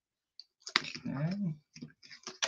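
A man's voice making a short murmur that rises and falls in pitch, with a few sharp clicks around it.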